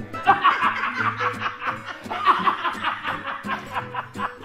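People laughing in repeated bursts, with music playing underneath.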